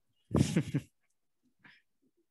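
A dog barking: one loud bark, then a fainter short one about a second later.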